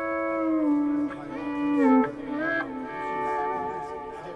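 Electric guitar played through a Digitech multi-effects unit's slow-gear volume-swell effect: held notes that swell in without a pick attack, with a downward bend about two seconds in and a new note near three seconds. It almost sounds like a pedal steel.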